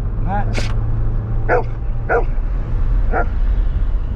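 A dog barking inside a moving car's cabin, about five short separate barks spread over a few seconds, over the steady low drone of the engine and road.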